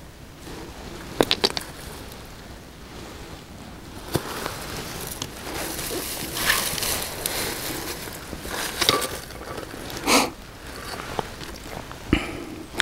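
Handling noise of stones on gravelly, grassy ground: rustling, with a quick run of light clicks about a second in and a single click near four seconds.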